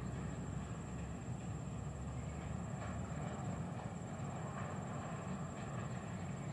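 Low, steady rumble of a Jakarta–Bandung high-speed train running through the tunnel below, heard from the ground above the tunnel.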